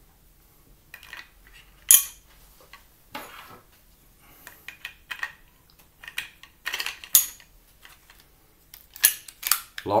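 Crossbow bolts being fitted into a plastic crossbow magazine by hand: irregular sharp clicks, taps and rattles of hard plastic and bolts, the loudest about two seconds in.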